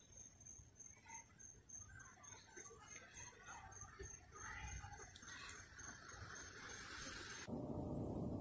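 Faint outdoor ambience: a low rumble with a thin, high chirp repeating evenly a few times a second. The chirp stops shortly before the end, when a louder rustling noise takes over.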